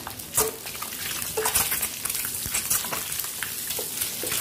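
Hot refined oil sizzling and crackling in a non-stick pan around pieces of boiled egg white, with a wooden spatula stirring and scraping in the pan and a few sharp clicks.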